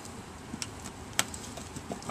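A few light clicks and taps from work on a car's plastic wheel-well liner and its fasteners, the sharpest just over a second in, over faint background noise.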